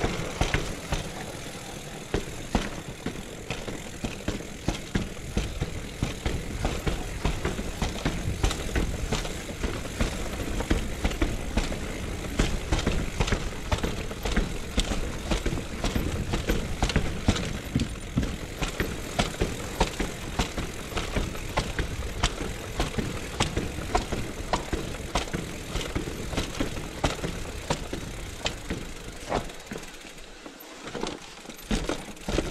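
Mountain bike rolling down a cobbled, stone-paved lane: a steady low rumble from the tyres on the stones, with the bike rattling in a dense run of sharp clacks and knocks several times a second.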